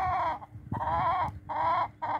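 Chicken calling: a long drawn-out call that ends about half a second in, followed by two shorter calls.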